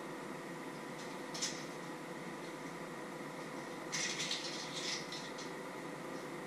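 Kitchen items being handled on a worktop: a single sharp click, then a rattling clatter lasting about a second and a half, over a steady hum.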